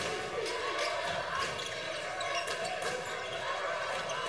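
Basketball being dribbled on a hardwood court over the steady murmur of an indoor arena crowd.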